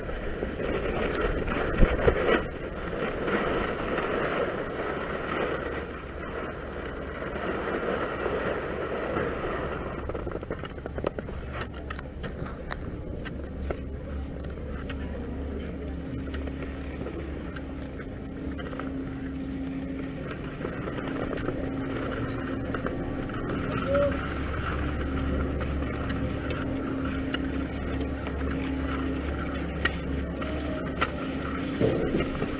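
Skis sliding and scraping over wet, gritty snow for roughly the first ten seconds. Then a steady low mechanical hum with a constant held tone runs on through the rest.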